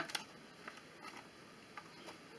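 Faint clicks of a cardboard box and clear plastic tray being handled as the packaging is opened, a few scattered ticks in near quiet, the first just after the start the clearest.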